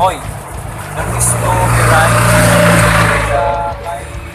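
A motor vehicle passing close by: its engine hum and road noise swell for about two seconds and then fade.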